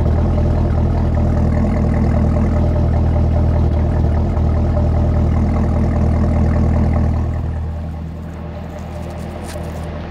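Supercharged 6.2-litre LT4 V8 of a 2019 Chevrolet Camaro ZL1 idling steadily through its dual exhaust with a deep, even rumble, heard at the tailpipes. It gets somewhat quieter about eight seconds in.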